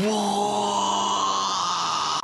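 A man's voice holding one long 'aaah' on a single steady pitch, a comic exclamation.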